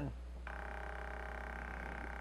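Stepper motor jogging slowly at a low set speed, at 10 RPM: a steady whine of several even tones that starts about half a second in, as the run button is held down.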